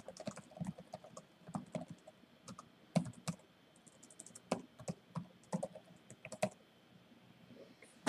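Typing on a computer keyboard: a run of quick key clicks, a short message being typed, that stops about two-thirds of the way through.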